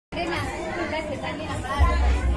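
Voices talking, cutting in suddenly just after the start, with a low rumble joining near the end.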